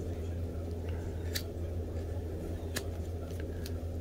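Whittling knife taking short slicing cuts into a small block of wood while shaping a frog carving, heard as several short crisp snicks. A steady low hum runs underneath.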